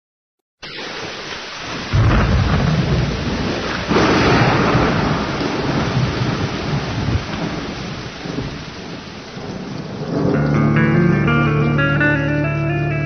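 Recorded thunderstorm: a steady rush of heavy rain that starts abruptly under a second in, with loud rolls of thunder coming in about two and four seconds in. Near the end, instrumental music with sustained tones fades in over the storm.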